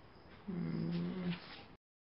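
A person's voice: one drawn-out low sound, like a hum, held for about a second. Near the end the audio cuts out to dead silence.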